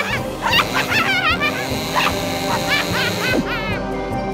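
Background music under a string of short, high, yelping cries that rise and fall in pitch, several a second.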